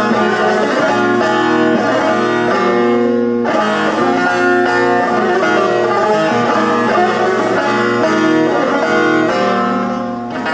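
Solo bağlama (Turkish long-necked saz) played continuously in a busy instrumental passage of quickly changing plucked notes, with a short break in the phrase about three and a half seconds in.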